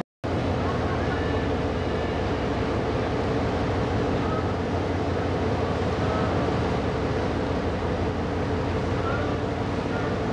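Steady low drone of a passenger ship's engine heard from the open deck, with faint voices now and then. The sound cuts out for a moment right at the start.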